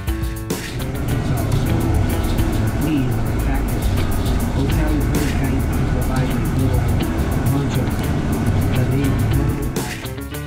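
Bus cabin sound while driving: engine and road rumble with indistinct voices.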